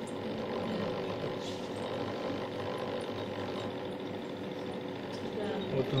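A steady machine hum with a few constant tones running through it, unchanging throughout.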